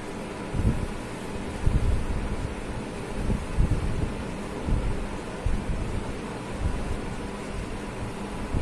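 Felt-tip marker writing on paper, over a steady low rumble and hiss with irregular soft thumps.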